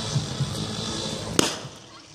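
Starting gun fired once for the start of a 400 m sprint heat, a single sharp crack about a second and a half in, over a steady murmur of spectators.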